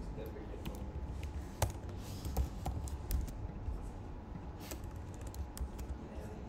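Typing on a computer keyboard: scattered key presses, one or a few at a time, with pauses between them.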